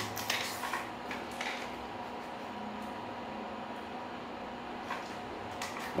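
Faint scattered clicks of objects being handled in the first second or so, then a quiet steady hum of room tone.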